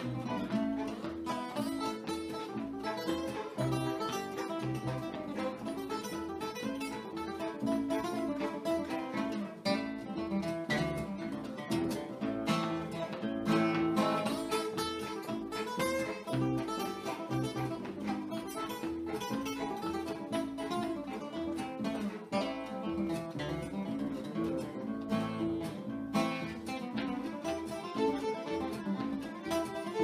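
Acoustic string band playing a bluegrass fiddle tune, with fiddle, two acoustic guitars and a resonator guitar played flat on the lap.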